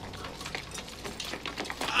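Footsteps of a group of people running on a cobbled street, a quick irregular patter of clicks that grows denser.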